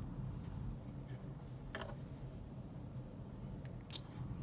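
Computer mouse clicking twice, about two seconds in and again just before the end, over a low steady hum.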